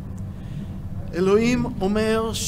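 A man's voice speaking into a microphone, starting about a second in, over a low steady hum.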